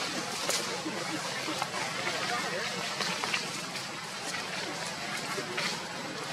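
Indistinct distant chatter of voices in a steady outdoor background, with a few light clicks.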